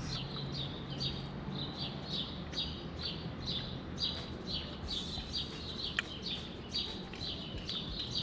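A small bird chirping over and over, about two short chirps a second, with a single sharp click about six seconds in.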